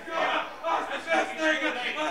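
A man's voice breaking into excited exclamations of praise, with rising and falling pitch, in an unbroken run of short calls that the words cannot be made out from.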